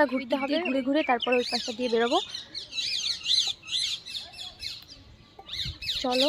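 A flock of rose-ringed parakeets calling: many short, high-pitched arched screeches overlapping, densest between about one and a half and four seconds in. A lower, repeating pitched sound runs through the first two seconds.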